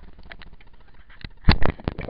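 Handling noise on a small action camera as fingers grip it: a few light clicks, then three sharp knocks in quick succession near the end.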